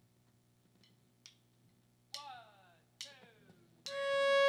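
A near-quiet pause with a few faint clicks, then two short downward slides on a stringed instrument about two and three seconds in, and a fiddle note starting just before the end as the song begins.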